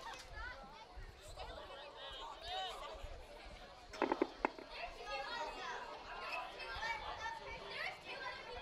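Distant, overlapping voices of players and spectators calling out and chattering around an outdoor soccer field. A couple of short, sharp knocks stand out at about four seconds in.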